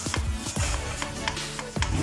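Electronic background music with a heavy bass beat.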